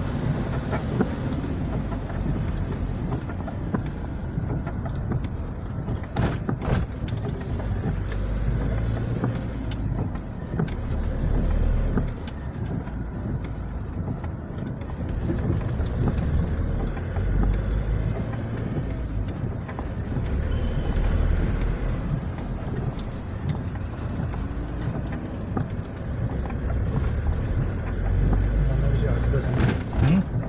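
A road vehicle driving, a steady low engine and road rumble, with a couple of brief knocks about six seconds in.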